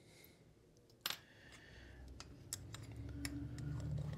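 A sharp metallic clink with a short ring about a second in, as a thin metal pick meets a small aluminium tin or the bench. A few light clicks and low handling noise follow as the tin's aluminium screw lid is picked up and brought onto it.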